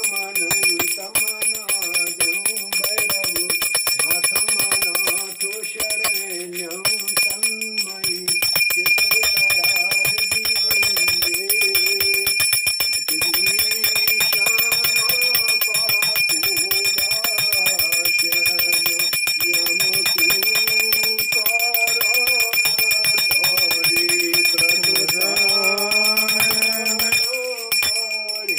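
Brass hand bell (puja ghanti) rung continuously, its strikes close together under a steady high ring. A voice sings or chants a hymn over it.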